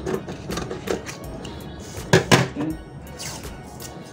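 Scissors cutting through a paper pattern sheet in short snips, with two louder sharp clicks about two seconds in.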